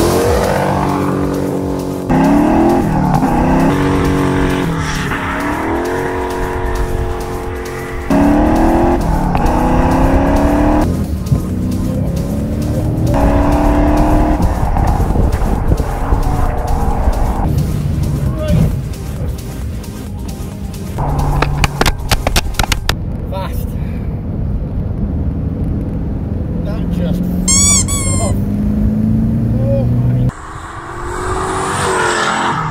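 Turbocharged TVR Chimaera V8 accelerating hard, its engine note climbing again and again as it pulls through the gears under full boost.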